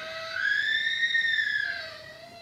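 A child's long, high-pitched wail from someone having a fit, rising and then falling in pitch, with a lower wavering tone after it near the end.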